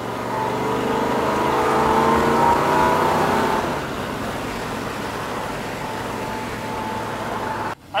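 1967 Corvette's L79 327 V8 accelerating, its pitch rising steadily for about three and a half seconds, then running steadily and a little quieter. The sound cuts off suddenly just before the end.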